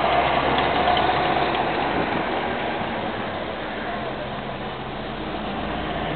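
Steady outdoor background noise with a low, engine-like hum, slowly getting quieter and picking up slightly near the end.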